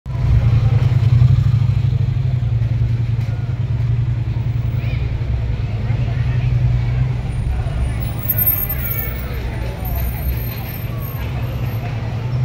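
Street traffic: a steady low engine rumble from motorbikes and a van idling and moving, with faint voices of passers-by.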